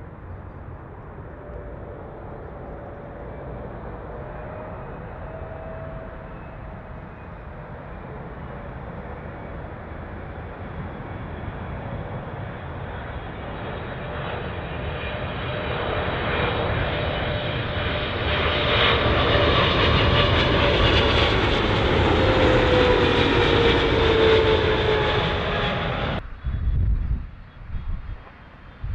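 Twin-engine jet airliner on final approach with gear down, its engine noise building steadily as it nears overhead, with whining tones that fall in pitch as it passes. The sound cuts off suddenly near the end, giving way to wind on the microphone.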